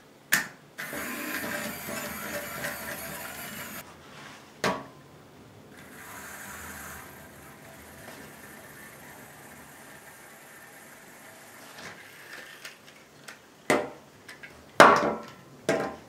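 Small electric geared motor of a Cubelets robot block whirring for about three seconds, then running more faintly for several seconds. Sharp clicks of the magnetic plastic cubes being snapped together, pulled apart and set down come at the start, about five seconds in, and several times near the end.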